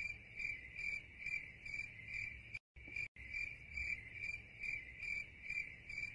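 Crickets chirping, a steady pulse of about two chirps a second that cuts out for half a second near the middle: the stock 'crickets' sound effect.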